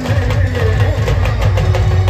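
Live band music played loud through a big speaker rig: fast, driving beats on hand-held drums struck with sticks, with heavy bass thumps under a sustained melodic line.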